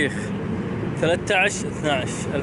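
A man speaks over a steady low hum from a vehicle engine idling close by.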